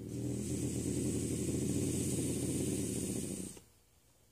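Bobcat growling at the feeding tongs: one low, continuous growl with a hiss over it, lasting about three and a half seconds and stopping abruptly.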